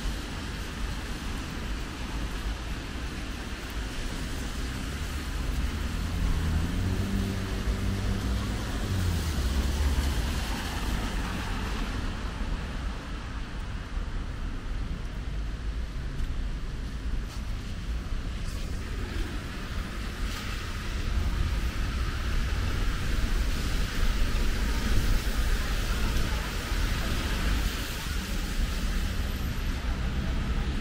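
Traffic on wet city streets: a steady hiss of tyres on the wet road, with a vehicle's engine rumble swelling and fading about seven to ten seconds in. The hiss grows louder through the second half.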